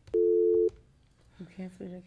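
Telephone line tone: one brief, steady two-note tone lasting about half a second as the call line switches to the next caller.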